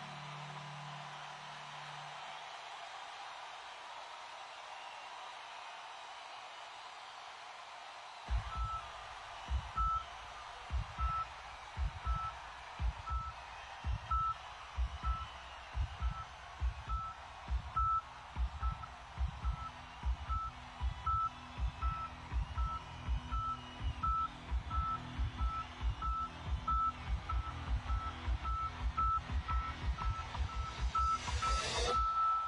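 Live concert sound: steady audience noise, then about eight seconds in a pulsing low electronic beat starts, joined by a short high electronic blip repeating about once or twice a second, the opening of a rock song's intro.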